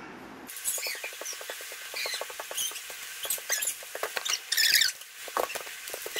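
Baking paper crackling and rustling as it is handled and folded over a slab of dough, a rapid run of small clicks. Short high chirping squeaks come over it, the loudest a little before the end.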